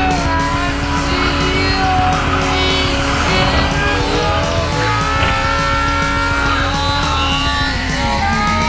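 Drift car engine running at high revs with tires squealing, mixed with background music.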